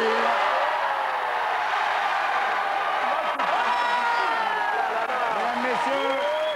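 Studio audience applauding and cheering, with shouts and whoops mixed into the clapping, at a steady level throughout: an applause-meter vote.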